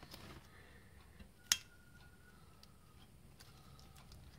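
Small metal parts being handled against an aluminium motorcycle crankcase: one sharp metallic click about a second and a half in, with a faint brief ring after it, among a few fainter ticks.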